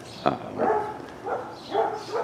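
A dog vocalizing in three short pitched calls in quick succession, after a single sharp click near the start.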